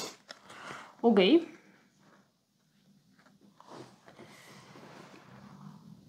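A short spoken "ok", then a quiet pause. After that comes faint, soft rustling and sliding as cardboard tokens and wooden pieces of a board game are handled on a cloth-covered table.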